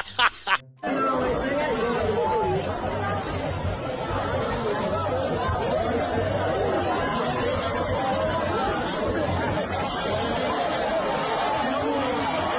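Short bursts of laughing stop with a brief gap under a second in, then many voices talk and call over one another without a break, with music underneath.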